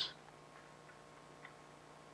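Quiet lecture-hall room tone with a faint steady hum, and one faint tick about a second and a half in.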